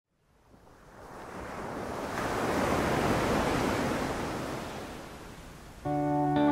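Ocean surf washing onto a sandy beach: one long wash of waves that swells up from silence, peaks about halfway and fades away. Guitar music comes in right at the end.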